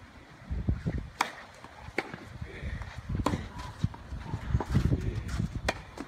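Tennis ball struck by racquets in a rally on a hard court: a serve about a second in, then three more sharp pops roughly a second or more apart, over a low rumble.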